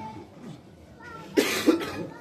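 A single loud cough about a second and a half in, over faint murmuring voices.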